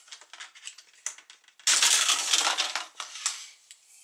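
Plastic screen bezel of an Acer laptop being pulled off the display lid. Scattered small clicks as its snap-fit latches let go, then a loud crackling of flexing, unsnapping plastic lasting about a second, a little before halfway through, and a few last clicks.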